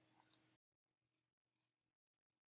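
Near silence broken by three faint, short clicks of a computer mouse.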